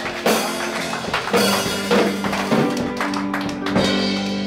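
Live band music from electric guitars and a drum kit, with several sharp drum or cymbal hits over sustained guitar chords.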